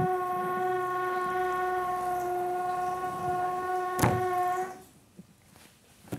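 A steady pitched tone from the street with several overtones, held for nearly five seconds before it cuts off, with a sharp click about four seconds in. It is loud enough on the studio recording to force a retake.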